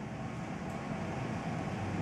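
Steady low background hum of room noise with no clear events.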